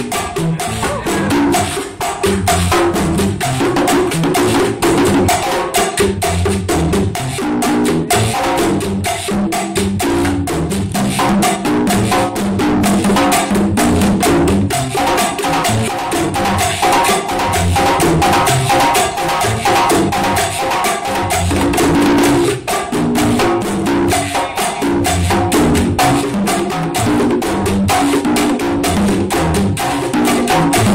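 Hand-played solo on a set of three congas: a rapid, unbroken run of hand strokes mixing deep low notes with higher ringing open tones from the different drums.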